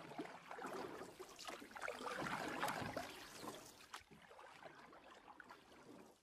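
Sound effect of rushing, splashing water, swelling to its loudest about two to three seconds in and then fading away.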